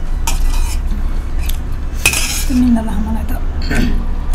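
Metal spoon clinking and scraping against a brass plate while scooping up rice, with a sharp clink about halfway through followed by a longer scrape.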